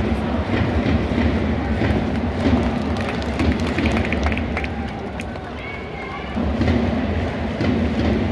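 Large crowd of baseball fans chanting together with the cheering squad's noisemakers, a dense and continuous din that dips briefly past the middle and swells again near the end, echoing under a stadium dome.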